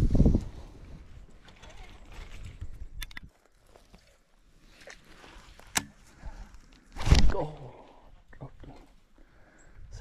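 A cast lure lands in shallow water with a loud splash about seven seconds in, as a Murray cod boils at it. Before the splash come a couple of sharp clicks from the baitcasting reel.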